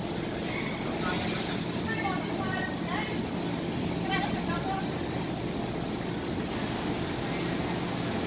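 Large-hall ambience: a steady low rumble with a constant hum, and distant voices calling out in short bursts, most of them in the first half.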